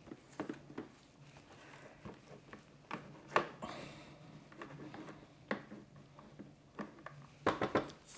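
Plastic spatula scraping steamed leek rings out of a Thermomix Varoma steamer into the mixing bowl, with soft scrapes and a few light knocks of the spatula against the plastic. The sharpest knock comes about three and a half seconds in.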